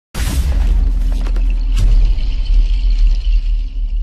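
Intro sting of designed sound effects: a loud, deep bass rumble that opens with a bright whoosh, with a few sharp glitchy hits between one and two seconds in.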